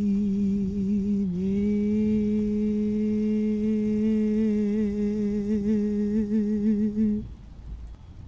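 A single voice humming without accompaniment: a long held note, a brief dip, then a second long held note whose vibrato grows wider before it stops about seven seconds in.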